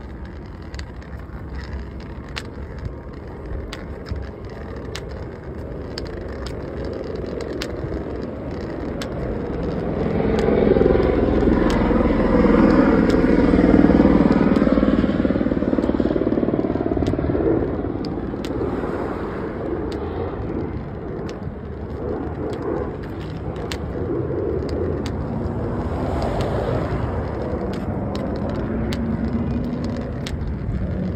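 Road traffic on a wide multi-lane road: steady tyre and engine noise, with a vehicle passing close by that builds to a peak about halfway through and fades away, then a smaller swell of traffic near the end.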